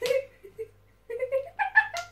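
A girl's high-pitched giggling and squealing in short broken bursts through the second half, after a short sharp sound at the start.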